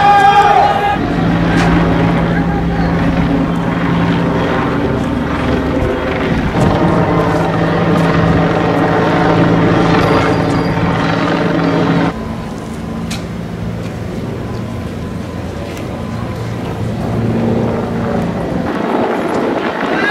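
A steady engine drone holding one pitch, louder for the first twelve seconds and then dropping suddenly to a lower level. Voices are heard at the very start.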